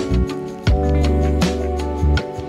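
Background music with a steady beat: a drum thump about every three-quarters of a second under sustained instrumental chords.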